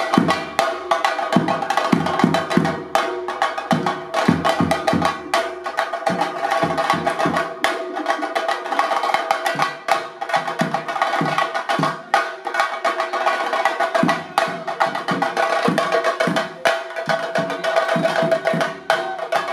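A chenda drum ensemble beaten with sticks in fast, dense strokes, with deeper drum beats underneath and a steady ringing tone above.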